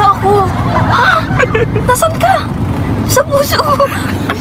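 People talking and exclaiming inside a car, with the low steady rumble of the car's cabin under their voices.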